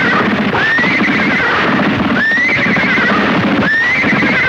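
A horse's whinny repeated about every second and a half, each call sweeping sharply up and then wavering down, over the rhythmic drumming of galloping hooves.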